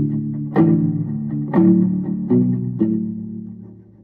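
Teisco SS-2L electric guitar played in the 'pirate' or 'scrape' rhythm: about five slightly muted chord strokes, each an upstroke scraped across the strings with the thumb, the last one ringing and fading out.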